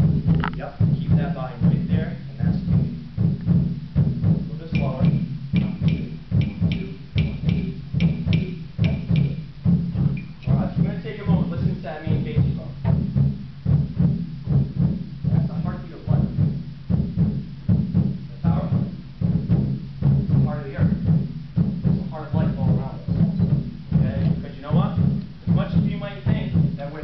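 A group of hand drums played together in a steady heartbeat rhythm, low thumps repeating evenly throughout. A few sharper, higher clicks sound over it near the start and again a few seconds in.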